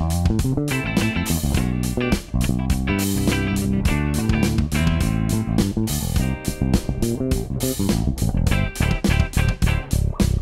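Sire V7 Vintage electric bass played fingerstyle in a groove with a clean electric guitar, over a steady drum beat.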